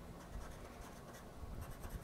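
Faint, quick scraping strokes of a flat scraper rubbing the coating off a scratch-off lottery ticket, coming thicker near the end.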